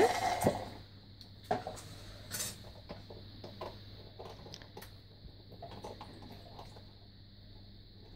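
A few light knocks and clicks from a cardboard milk carton being handled on a stone countertop, the loudest about a second and a half in, with a faint steady low hum between them.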